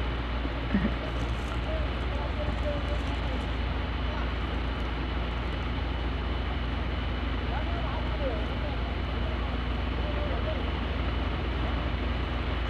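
A steady low rumble runs throughout, with faint, distant shouts of men over it every few seconds.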